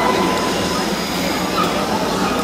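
Indoor ice rink ambience: a steady hiss of skate blades gliding and scraping on the ice, with a murmur of voices.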